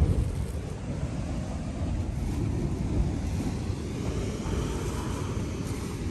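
Sea wind buffeting the microphone in a steady low rumble, with surf behind it.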